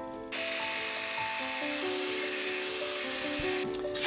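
Background music with held notes, over a small handheld power tool that runs steadily for about three seconds, starting just after the beginning and stopping shortly before the end.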